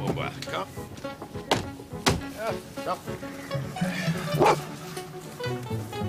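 A dog barking a few short times over background music, with a couple of sharp knocks early on.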